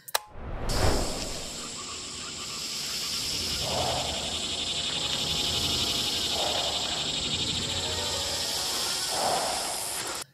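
Horror film soundtrack: quiet music under a steady high hiss, with a soft thump about a second in and three low swells spaced a few seconds apart.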